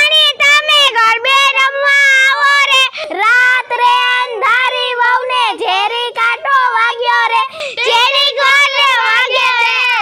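A child singing a garba song unaccompanied, in a high voice with sliding, bending notes and short breaks between phrases.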